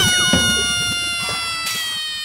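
A sound effect in the segment's opening jingle: one long, drawn-out held cry that slides slowly down in pitch for about two and a half seconds.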